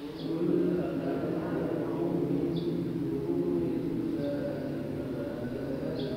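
A small bird chirping, a short high chirp every second or two, over a steady low droning sound.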